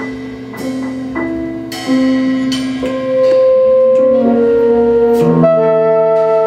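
Live avant-garde jazz quintet playing: saxophone and a second wind instrument hold long notes over piano and struck, ringing percussion. The music grows louder about three seconds in.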